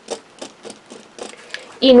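Faint, irregular light taps and scrapes of a red marking pen and a clear plastic quilting ruler being handled on fabric over a cutting mat, about half a dozen small clicks.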